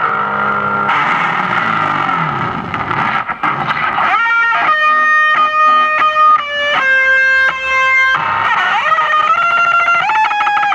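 Distorted electric guitar played through a small Vox amp: a few low notes, a stretch of scraping and muted strumming, then held single notes stepping in pitch about every half second. Near the end a note is bent down and back up.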